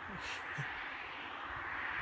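A woman's short, breathy laugh near the start, over a steady outdoor background hiss.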